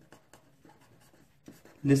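A pen writing on paper: faint, short scratching strokes as a word and an arrow are written out.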